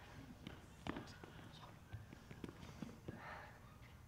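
Faint footsteps and scattered light knocks on a wooden stage floor, with a brief soft breathy sound about three seconds in.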